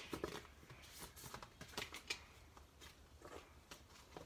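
Faint, intermittent rustling and crinkling of a clear plastic packaging sleeve as a card-backed sheet of thin metal cutting dies is slid out of it.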